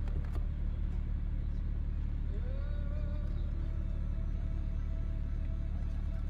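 Steady low hum of a 2020 Volkswagen Touareg's engine idling, heard from inside the cabin.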